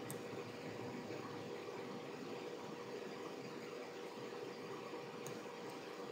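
Steady low background hiss with a faint steady hum: the recording's room tone, with no other sound.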